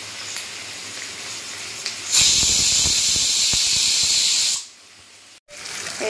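Pressure cooker on a gas flame letting off steam through its weighted whistle: a loud hiss that starts suddenly about two seconds in, lasts about two and a half seconds and stops abruptly, the sign that the cooker has come up to pressure. A fainter steady hiss comes before it.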